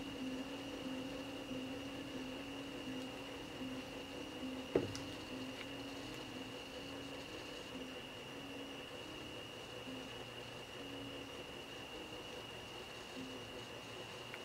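Faint room tone: a steady high whine and a low, wavering electrical hum. There is one brief falling squeak about five seconds in.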